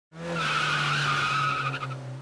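Cartoon sound effect of a car's tyres screeching in a long skid over a steady engine hum, fading out near the end.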